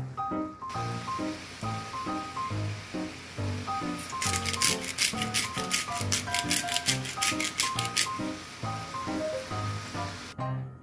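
Background music with a steady beat. From about four seconds in, a hand-held seasoning shaker is rattled rapidly over the pan, about five shakes a second, for some four seconds.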